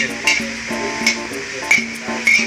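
Background music with held notes, over a few sharp clicks of a metal spatula against a wok as chunks of pork are stirred.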